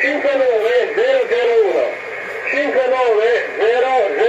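Speech only: a man speaking Italian, reading out a radio contest exchange, "59-001", in two stretches with a short pause between.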